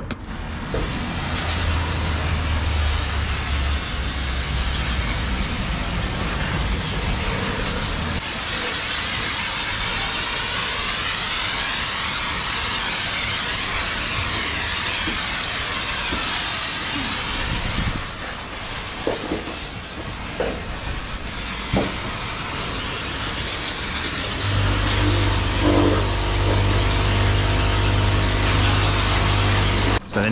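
Soap foam hissing out of a car-wash foam hose onto a scooter, a steady spray that weakens about eighteen seconds in. A low motor hum runs beneath it for the first several seconds and comes back louder near the end.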